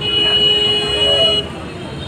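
A vehicle horn sounds once in a steady, high-pitched blast of about a second and a half, then cuts off.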